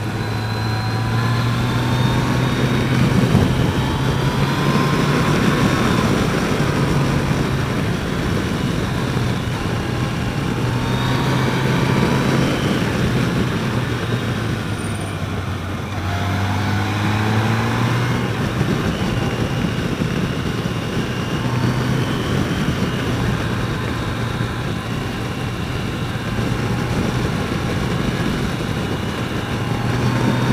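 Sport-touring motorcycle engine running at road speed, its pitch rising and falling again and again with the throttle through the bends, under a steady rush of wind noise.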